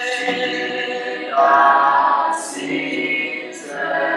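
A group of voices singing unaccompanied, holding long notes in harmony.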